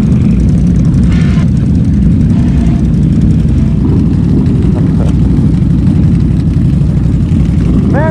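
Can-Am Renegade XMR 1000R's V-twin engine idling steadily while the ATV sits in deep mud.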